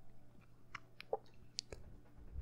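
Faint mouth clicks close to a microphone, about half a dozen scattered through the pause.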